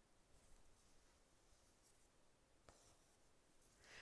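Near silence, with a few faint rustles of embroidery floss and cotton fabric being handled in a hoop, and one soft tick about two and a half seconds in.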